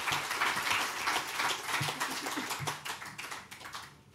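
An audience applauding: a dense patter of hand claps that dies away over a few seconds.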